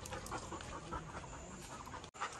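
A dog panting quietly.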